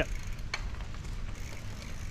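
Bicycle rolling along a dirt trail: low rumble of tyres and wind buffeting on the microphone while riding, with a sharp click about half a second in.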